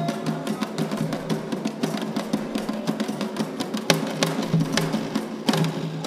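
Atabaque hand drums and a struck metal agogô bell playing a fast, dense Afro-Brazilian sacred rhythm, with a few sharp accented strikes.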